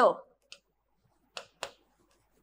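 A stylus tapping on the glass of an interactive display panel while writing by hand. It makes three short clicks: one about half a second in, then two close together about a second and a half in.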